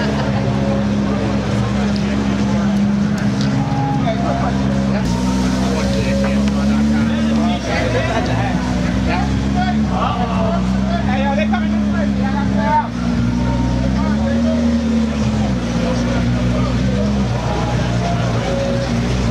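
McLaren P1's twin-turbo V8 running at low revs as the car creeps forward at walking pace, its pitch stepping up and down slightly a few times. Crowd voices chatter over it.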